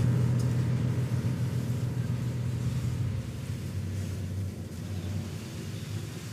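Orchestral music: a low, rumbling chord held in the bass, gradually fading.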